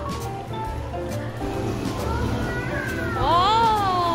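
Background music with steady held notes. About three seconds in, a pitched voice-like call rises and then falls over about a second.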